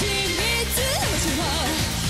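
A female J-pop singer sings live into a handheld microphone, her melody line starting at the opening and moving up and down over loud, steady pop band accompaniment.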